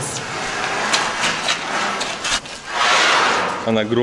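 A long metal stair being dragged and handled across a rubble-strewn concrete floor: metal scraping in noisy swells, with a few knocks and clanks.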